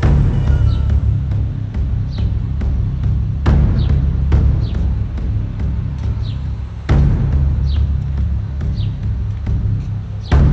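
Background music with a heavy, steady bass and a sharp percussive hit about every three and a half seconds, with short falling high notes between the hits.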